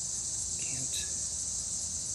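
Continuous high-pitched chorus of insects shrilling steadily, with a brief faint chirp about halfway through.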